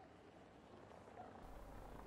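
Near silence: faint outdoor background noise that swells slightly over the last second.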